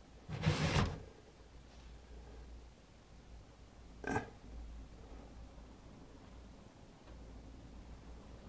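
A man coughing once, roughly, about half a second in, then a short throat sound about four seconds in, over a low steady hum.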